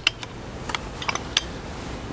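A few light clicks from the metal lever mechanism of an old AutoSiphon soda-syphon refiller as it is lifted by hand, over low steady background noise.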